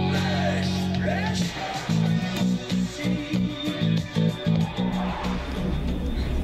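Four-string electric bass guitar playing the song's bass line: a long held low note, then a run of short repeated notes about three a second.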